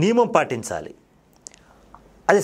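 A man speaking Telugu briefly, then a quiet pause with one faint short click about a second and a half in.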